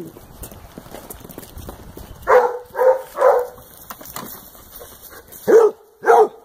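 Basset hound barking: three barks in quick succession a little over two seconds in, then another near the end.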